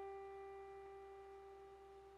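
A single piano note, the G that ends a five-finger right-hand run, left to ring and fading slowly and faintly.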